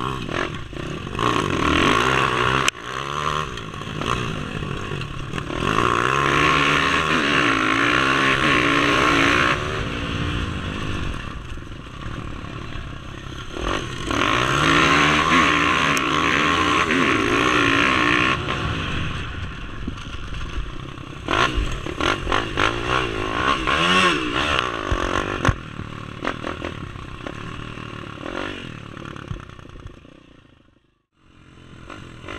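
Dirt bike engine, heard from on board, revving up and down in several long surges as the bike rides over a rough field. Short knocks and rattles from the bumps come in clusters in the second half.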